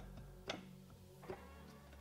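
Faint background music with a steady low bass, and two light clicks about half a second and just over a second in as the aluminium cylinder slides down the studs onto the crankcase.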